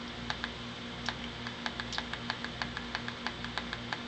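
Small tactile push-button on a PWM signal generator module clicking repeatedly, about four quick presses a second, stepping the duty cycle down. A steady low hum runs underneath.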